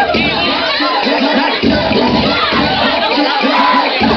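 A crowd of young people shouting and cheering loudly and without a break, with a repeating low rhythm beneath the voices.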